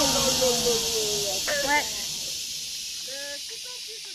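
Distant voices calling out over a steady hiss, all fading gradually. The loudest is one long call with falling pitch in the first second; shorter calls follow about a second and a half in and again near the end.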